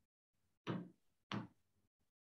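Two sudden knocks, the second about two-thirds of a second after the first, each dying away quickly.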